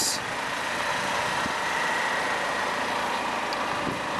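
A car engine idling steadily.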